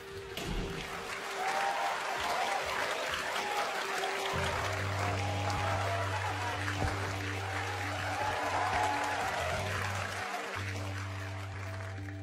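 A theatre audience applauding, the clapping swelling over the first second or so, over music with held tones and a steady low bass note that comes in about four seconds in.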